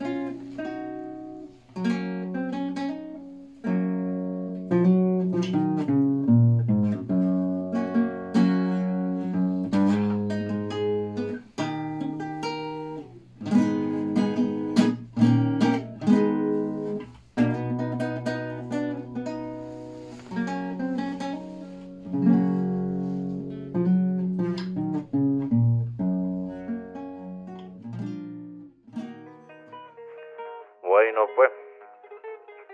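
Acoustic guitar playing an instrumental passage of a yaraví, the slow, mournful Arequipan song form, with plucked notes and strummed chords.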